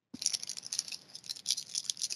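Foil trading-card pack wrapper crinkling as it is handled and opened: a dense, irregular run of small crackles.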